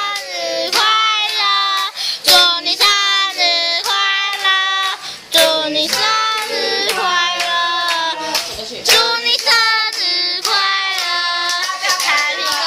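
Group singing a birthday song, a child's voice among the singers, with steady hand clapping about twice a second.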